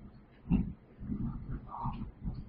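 A man's low, wordless vocal sounds close to the microphone: a few short hums or grunts, the loudest about half a second in.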